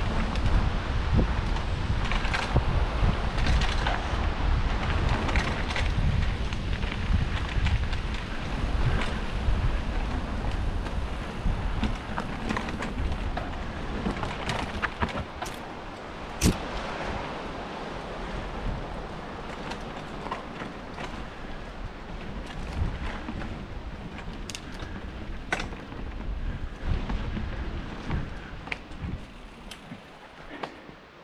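Mountain bike riding down a dirt trail, with the suspension shock locked out: wind buffeting the microphone and tyres rolling over dirt, with many sharp clicks and rattles from the bike over bumps. The low wind rumble eases about halfway through.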